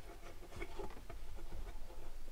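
Faint small taps and rustles of hands handling a folding table top.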